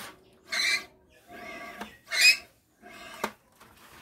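Plastic toy gun being handled and worked: two short bursts of noisy rattle and a few sharp clicks from its plastic parts.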